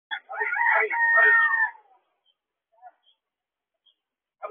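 A rooster crowing once: a few short notes, then a long held note that falls away at the end.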